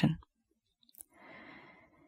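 A soft breath drawn in about a second in, just after a faint click, in an otherwise near-silent pause between spoken phrases.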